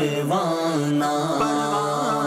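Devotional chanting: a sustained, ornamented sung melody gliding between held notes over a steady low held tone.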